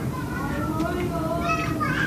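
High-pitched voices in the background, with drawn-out, gliding pitch, like children calling or chattering.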